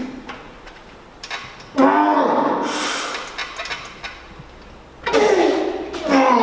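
A man groaning with effort through heavy reps on a plate-loaded chest press machine: two long, loud strained groans, about two seconds and five seconds in, each falling in pitch.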